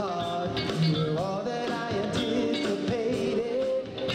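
Live old-school R&B: a four-man vocal group singing with a backing band, several voices bending in pitch over a steady band sound.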